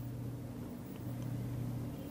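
Steady low hum of background noise, with no other sound standing out.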